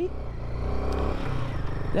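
Royal Enfield Himalayan 450's single-cylinder engine running as the motorcycle rides along, its note changing about halfway through, with wind noise on the microphone.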